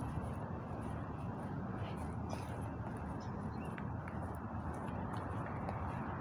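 Steady rushing wind noise buffeting the phone's microphone outdoors, starting suddenly and holding even throughout.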